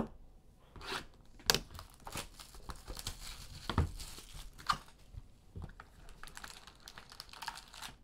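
Plastic shrink-wrap being torn off a sealed trading-card box and crumpled by hand: irregular crinkling with scattered sharp crackles.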